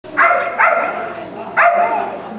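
A dog barks three times in quick succession, sharp, loud barks that echo in a large hall.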